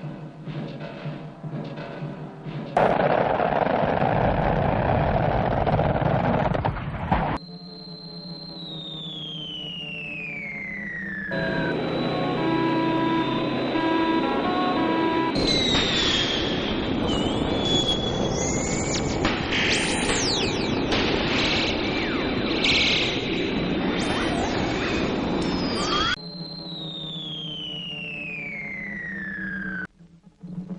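Electronic science-fiction soundtrack of effects and music. A loud burst of rushing noise is followed by a long falling whistle, then a stretch of beeping tones and a run of squealing, warbling glides. The falling whistle comes again near the end.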